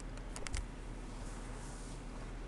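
A few light, sharp clicks of a stylus tapping and stroking a tablet screen as letters are written, bunched in the first second, over a steady low hum.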